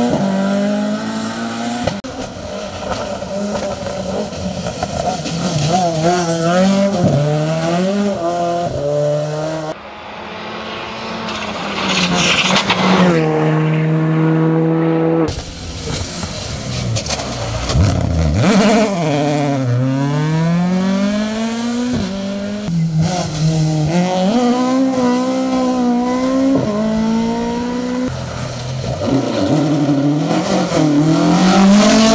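Rally cars, Mk2 Ford Escorts among them, driven hard one after another on a tarmac stage: engines revving up through the gears, dropping off under braking for bends and pulling away again. Around two-thirds of the way through, one engine note falls steeply and then climbs back as a car brakes into a corner and accelerates out.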